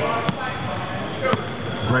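A basketball bouncing on a hardwood gym floor, with a couple of sharp bounces, over echoing chatter in the gym. A commentator's voice says "great" at the very end.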